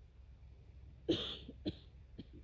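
A single short cough-like burst about a second in, followed by a brief sharp click-like second burst.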